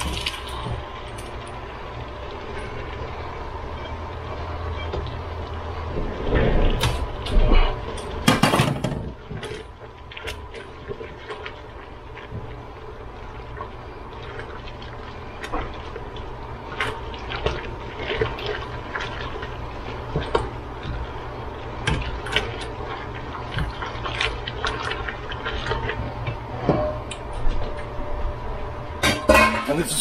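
Thick Alfredo sauce being scraped from a skillet with a silicone spatula and poured into a pot of noodles, loudest about six to nine seconds in, then wet sloshing with short scrapes and clinks as the sauce and noodles are stirred together in the metal pot. A steady low hum runs under the first several seconds.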